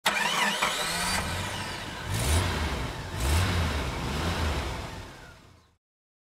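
An engine starting up, then revved twice before fading out.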